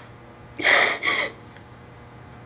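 A young woman crying, drawing two sharp gasping sobs in quick succession about half a second in.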